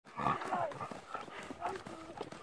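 Footsteps on a dirt path, with irregular soft scuffs and ticks, and a faint voice in the background.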